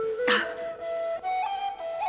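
Background music: a flute-like woodwind playing a melody in short stepped notes. A brief, sharp sound cuts in about a third of a second in.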